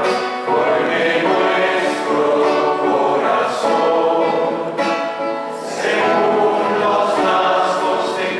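A choir singing a hymn in held, sustained phrases with brief breaths between them: the offertory hymn sung while the gifts are prepared at the altar.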